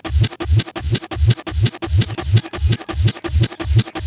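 Live electronic drum and bass jam from a Korg Electribe 2S sampler and Korg Volca Bass synth: a rapid, even run of short chopped drum hits over pulsing bass notes, about four thumps a second.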